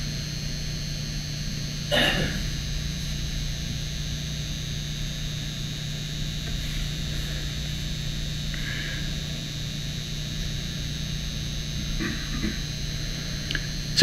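Steady electrical hum with faint high-pitched whine tones: the room tone of the talk's recording, with no distinct event. One short spoken word comes about two seconds in.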